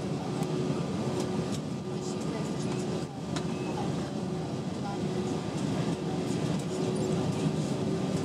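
Cabin noise inside an Airbus A320-232 taxiing slowly: a steady rumble from its IAE V2500 engines and the airflow, with a faint steady tone that comes and goes.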